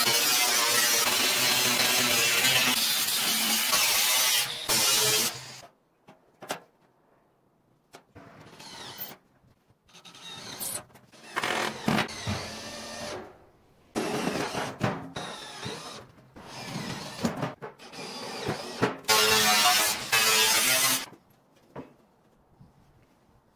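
Angle grinder cutting through a steel drum: a loud, steady whine for about five seconds. Then a run of short, broken-off bursts of power-tool and metal noise, and a second loud grinding stretch near the end.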